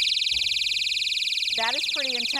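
Built-in 120-decibel personal alarm in an umbrella handle blaring a loud, shrill, rapidly pulsing high-pitched siren that cuts in suddenly and keeps going, set off by pulling its pin.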